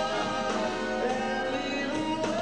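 Live big band swing with a male crooner singing over the full band.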